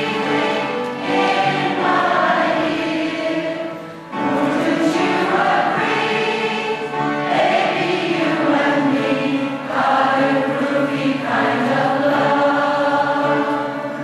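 A large community choir singing together, many voices holding long sung phrases, with a short break between phrases just before four seconds in.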